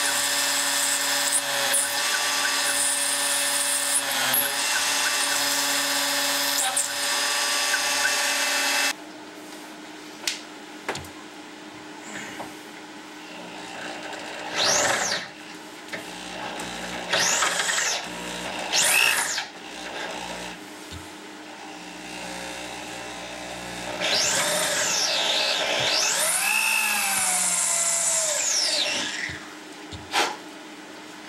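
CNC router spindle running steadily as a drill bit plunges into an aluminium bar, cutting off suddenly about nine seconds in. After that, a corded handheld drill speeds up and slows down several times in short runs as it drills.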